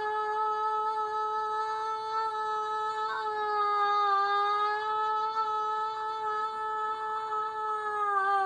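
A person's voice holding one long, steady hummed note, with only a slight dip in pitch about halfway through.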